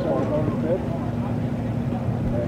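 Race car engines idling steadily under a red flag, a low even hum, with a faint voice briefly about half a second in.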